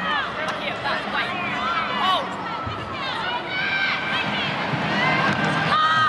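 Stadium crowd noise: a steady murmur with scattered short shouts and calls from players and spectators.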